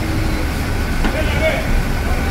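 A pickup truck's engine running as it drives slowly off a ferry's vehicle deck, with a steady low rumble.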